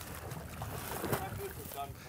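Water sloshing and lapping around a horse standing and moving in belly-deep pond water, with wind on the microphone.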